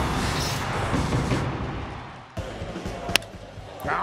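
A short TV sports-news transition sting: a dense swoosh of music that starts loud and fades away over about two seconds, followed by quieter ballgame background with one sharp crack a little after three seconds in.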